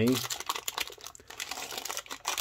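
Plastic biscuit-packet wrapper crinkling as hands twist and pull at its opened end, a dense run of small crackles.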